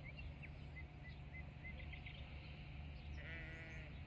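A sheep bleats once, a short wavering call near the end, over a steady low background rumble.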